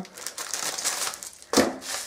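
Packaging crinkling and rustling as it is handled, with a louder, sharper rustle about one and a half seconds in.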